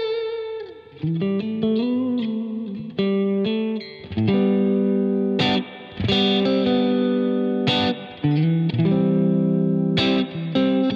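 Clean electric guitar: a Fender Stratocaster on the combined neck and middle pickups, played through an Axe-FX II preset with a compressor, a Super Verb amp model, spring reverb and a stereo enhancer. It plays bluesy licks with bent notes, then a run of ringing struck chords.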